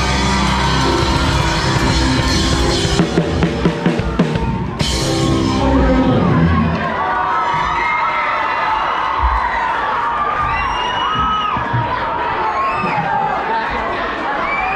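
Live rock band of drum kit and electric guitars ending a song: full band playing, a run of hard drum hits and a crash about four seconds in, and the last chord ringing out. About halfway through, the audience starts cheering and whooping.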